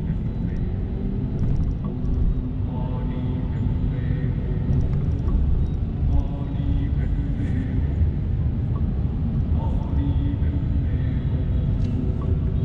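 Steady low road and engine rumble inside a car's cabin while driving slowly in city traffic, with people's voices talking now and then.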